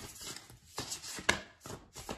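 Tarot cards being handled and flicked through by hand: a string of light clicks and taps, the sharpest a little past halfway.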